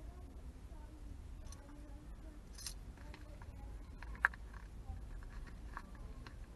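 Quiet handling of banknotes and coins being counted by hand: faint rustles and small clicks, with one sharp click about four seconds in, over a low steady rumble.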